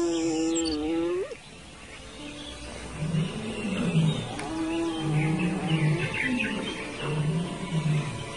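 Low wild-animal calls. One long call about a second long ends in a rising note, then a run of shorter, quieter low calls follows about a second apart.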